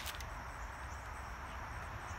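Outdoor backyard ambience: a steady low rumble under faint, steady high-pitched insect chirring, with a small click or two just after the start.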